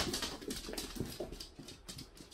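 A dog's claws clicking and tapping irregularly on a hard floor as it moves about.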